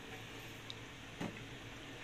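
Mostly quiet room tone with a single click a little past a second in as a gas cooker's control knob is pressed in, and a fainter tick just before it.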